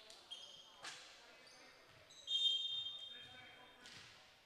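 A referee's whistle sounds about two seconds in, one long blast that fades away in the hall, the signal for the server to serve. Before and after it, a volleyball bounces on the hardwood floor, once about a second in and again near the end.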